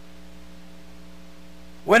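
Steady electrical mains hum, several faint steady tones held without change, with speech starting right at the end.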